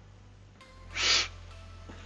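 A single short breath noise at the microphone about a second in, over a steady low hum.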